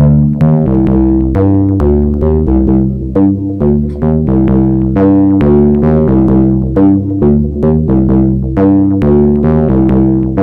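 Elektron Syntakt playing a looping pattern: its chord machine engine in unison mode sounds repeating synth notes stacked in octaves, whose tone shifts as the wave shape is turned. An analog kick and an offbeat hi-hat from the same machine tick along about twice a second.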